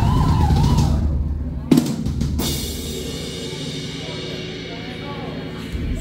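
Rock drum kit played live between songs: a dense run of drum hits, a sharp strike a little under two seconds in, then a cymbal crash that rings on and slowly fades.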